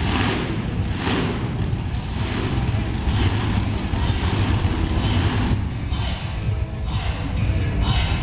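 Monster truck engines running loudly in an indoor arena: a deep, steady rumble with surges of noise.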